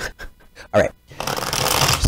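A deck of tarot cards being shuffled by hand: a few soft taps of cards early on, then from a little past halfway a continuous rapid flutter of cards running together.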